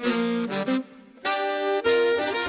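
Big band horn section playing short, punchy ensemble phrases in chords, with brief gaps between them. The saxophones are prominent.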